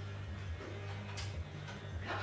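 Sulphur-crested cockatoo climbing a metal hoop perch, its beak and claws making a few light clicks and taps about a second in, over faint background music.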